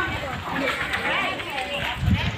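A group of people's voices chattering and calling out, several voices overlapping.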